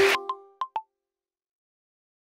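The show's music and laughter cut off abruptly, followed by a short end-card sound logo: three quick pop-like notes within the first second, the last one slightly lower.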